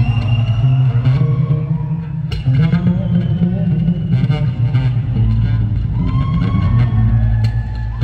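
Solo acoustic guitar played live in a large hall, an instrumental passage with a strong low bass line under plucked melody notes and a few sharp percussive hits on the strings.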